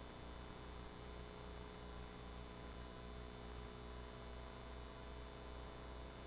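Steady low electrical hum with a faint even hiss, unchanging throughout.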